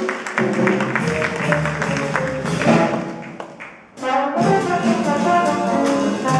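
Live jazz quintet playing: piano with drums for the first three seconds or so, then a brief drop in level, and at about four seconds trombone and alto saxophone come in together over the band.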